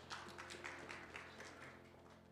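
Faint scattered clapping from a small congregation, a few claps a second, thinning out, over soft sustained musical tones.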